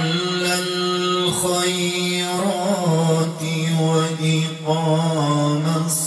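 A man's voice reciting the Quran in melodic tajwid style into a handheld microphone. He holds one long note for about two seconds, then moves through wavering, ornamented turns of pitch.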